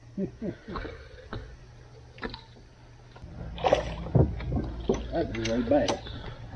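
Indistinct, unworded voices in a boat, with a few sharp knocks. A steady low hum runs through the middle stretch.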